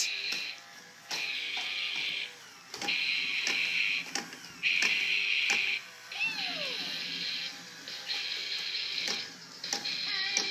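Electronic Mickey Mouse toy playing rock music through its small speaker: about six loud, buzzy guitar-like blasts, each a second or so long with short breaks between them, and a short falling swoop about six seconds in. Sharp knocks from the children's play are heard throughout.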